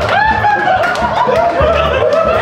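A group of people laughing loudly over one another, with music playing underneath.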